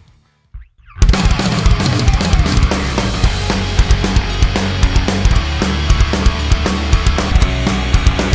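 Heavy metal band mix with distorted electric guitar, bass guitar and drum kit. It starts abruptly about a second in after near silence. The guitar runs through a Revv Generator MkIII amp into a Celestion G12 EVH greenback-style speaker, close-miked with an SM57 and no EQ.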